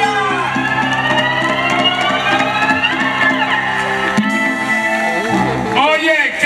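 Live timba band with violin playing, long sustained notes sliding slowly upward over the beat; about four seconds in the bass and beat stop as the song ends, and a man's voice starts near the end.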